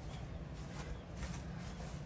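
Quiet outdoor background with a few faint ticks; no loud event.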